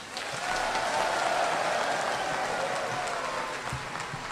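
Large audience applauding: the clapping builds up about half a second in and then slowly fades.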